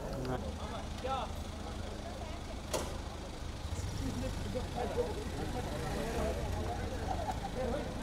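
A car engine idling close by, a steady low rumble, with faint talking over it and one sharp click a little under three seconds in.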